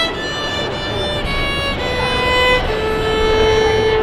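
Live violins playing a slow, stepwise melody of long held notes, accompanied by a ukulele, ending on one long sustained note.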